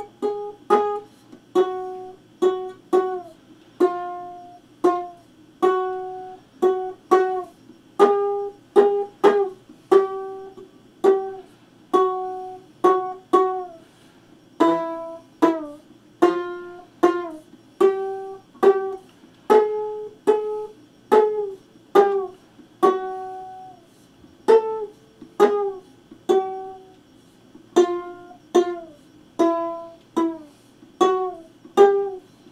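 A one-string cigar-box diddley bow plucked over and over and played with a slide, one to two twangy notes a second, each ringing out and fading, several sliding up or down in pitch.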